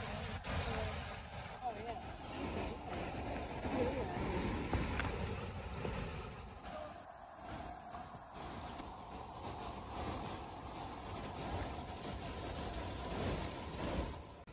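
River water rushing over a shallow riffle and a low dam spillway: a steady wash, with some wind noise on the phone microphone.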